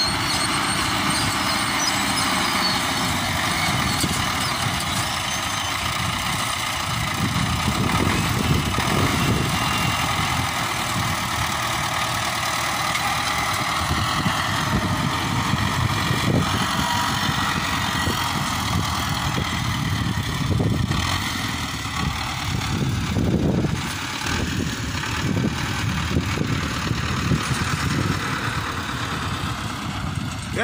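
Farm tractor engine running steadily under load while it pulls a multi-row seed planter across the field.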